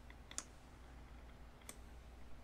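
Two faint computer mouse clicks, one about half a second in and one near the end, over near-silent room tone with a low hum.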